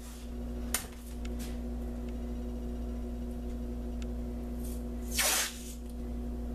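Masking tape pulled off the roll in one short rasp about five seconds in, with a small click near the start, over a steady electrical hum.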